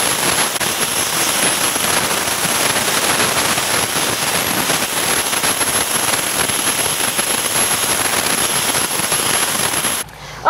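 Air spade blasting soil away from a maple's root flare with compressed air: a loud, steady jet hiss with a thin, steady high whistle above it.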